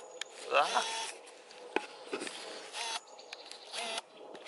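A man's short "ah", then faint scattered clicks and rustles of the camera being handled while it is zoomed out and refocused.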